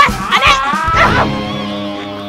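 A short, whining, whimpering cry that slides up and down in pitch during the first second, over comedic background music that then holds a steady chord.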